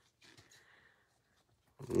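Mostly near silence, with a few faint clicks from trading cards being shuffled in the hands; a man's voice begins near the end.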